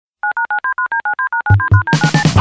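A rapid run of telephone touch-tone (DTMF) dialling beeps, about fourteen short two-note tones in quick succession, used as a track intro. Low thumps join about one and a half seconds in as the band's music starts.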